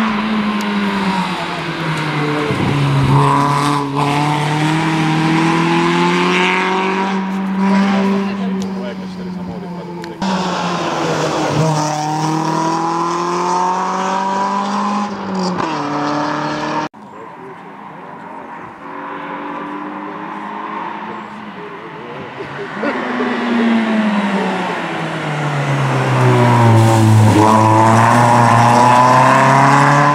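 Peugeot 106 rally car's engine revving hard and falling away again several times as it lifts and brakes for bends and then accelerates. The loudest revving comes near the end, as the car passes close.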